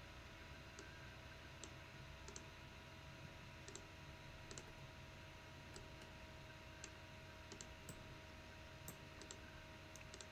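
Near silence with faint, irregular clicks of a computer mouse over a steady low electrical hum.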